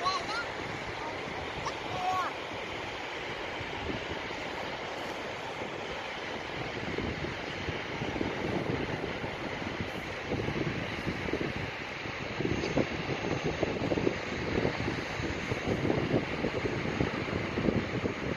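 Sea wind buffeting the microphone over the steady wash of surf, gustier in the second half.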